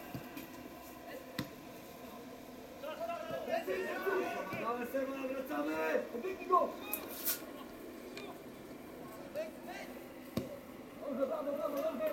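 Men's voices talking and calling out during a football match, quiet for the first couple of seconds and then picking up. A few short sharp knocks are heard in between.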